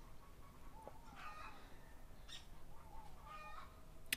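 Faint clucking of chickens in the background: a few short calls about a second in and again near the end.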